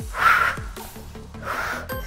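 Upbeat workout background music with a steady beat, over which a woman breathes out hard twice, once just after the start and again about a second and a half in: breaths of exertion during a Pilates roll-up.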